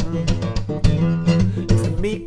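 Acoustic guitar accompanying a folk song, chords strummed and picked with a steady run of sharp string attacks.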